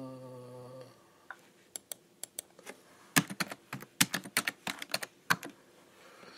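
Typing on a computer keyboard: a run of irregular, quick keystrokes starting about a second in and growing denser in the second half, as a search is typed.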